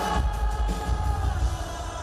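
Live rock band playing at full volume, a singer's long held note over electric guitar and heavy bass.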